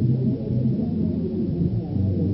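Muffled, bass-heavy music: low notes that change every fraction of a second, with little in the treble.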